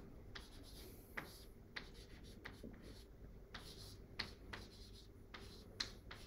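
Chalk writing on a blackboard: faint, irregular taps and short scratches as the chalk strikes and drags across the board.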